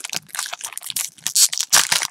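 Foil wrapper of a 2018 Panini Origins football card pack crinkling and tearing as it is pulled open by hand. The crackles are irregular and get louder in the second half.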